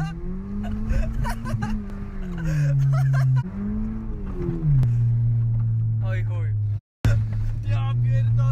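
Car engine heard from inside the cabin, revving up and easing back twice, then running at a steady pitch while driving on a rough forest and field track. The sound cuts out for a moment near the end.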